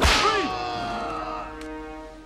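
A whip lashes once across a man's bare back with a sharp crack at the start, followed by his pained cry. Held tones of orchestral score sound underneath.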